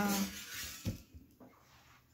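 A drawn-out spoken 'wow' trails off, then a single short click about a second in, followed by quiet room tone.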